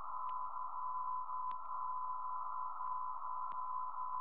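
Meteor-detection radio receiver audio: a steady tone of about 1 kHz held in a narrow band of hiss, with a few faint clicks. It is a radio echo lasting well over a minute, which may be an extremely big meteor burning up in the atmosphere.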